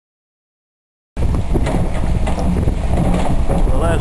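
Silence for about the first second, then a steady low diesel rumble of the JCB excavator's engine running, with wind on the microphone. A man's voice begins just before the end.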